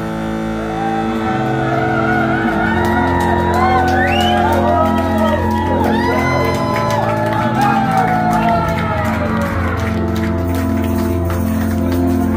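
Live band holding long sustained chords on keyboard and bass, with shouts and whoops over the music.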